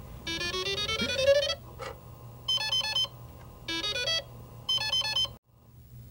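Electronic synthesizer music: a fast rising run of bright, beeping notes, then three short bursts of rapid notes, over a low steady hum. The music cuts off suddenly about five and a half seconds in.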